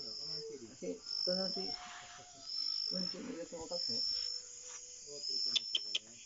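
An insect chirping in short, high bursts, one about every second and a half, under a person's soft, wordless voice.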